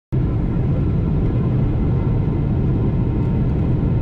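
Jet airliner's engines and airflow heard from inside the cabin at a window seat in flight: a steady, loud, deep rumble that holds even throughout.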